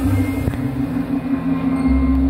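Live band music: a woman singer holding one long note over piano and plucked double bass, the sustained close of a song.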